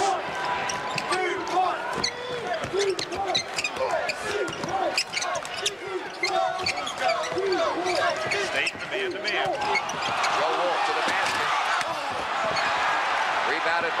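Arena sound of a live basketball game: the ball bouncing on the hardwood court with short sharp strikes amid crowd noise. About ten seconds in, the crowd grows louder.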